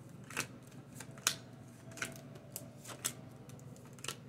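Tarot cards dealt off the deck and laid face-down on a wooden table: a string of light card snaps and slaps, about six in four seconds.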